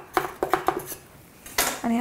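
A metal knife clinking and scraping against the side of an aluminium cake tin as the blade is worked around the edge to loosen the cake, a quick run of light clicks, then a louder knock near the end.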